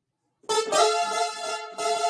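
Electronic keyboard playing a run of sustained chords, starting suddenly about half a second in after a moment of silence, with the chord changing roughly every half second.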